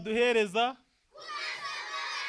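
A man's voice calls out a line through a microphone. After a brief pause a crowd of children chants the response together.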